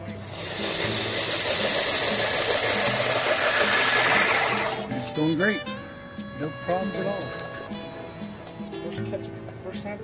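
A 20-inch hand push reel mower cutting grass: a loud, steady noise from the spinning reel blades that stops about five seconds in. Background music plays under it throughout.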